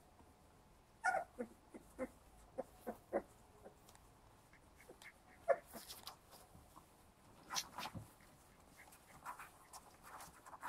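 Very young puppies in a litter making short, high squeaks and whimpers: a quick run of them between about one and three seconds in and a louder single squeak about halfway. Soft rustling of newspaper and pads as the puppies shift.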